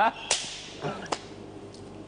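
A single sharp hand slap, followed by a fainter tap about a second later.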